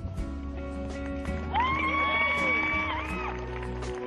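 Background music with a loud human whistle from the crowd: it swoops up about one and a half seconds in, holds steady for about a second and a half, then breaks off. This is typical of a guest cheering as the couple kiss.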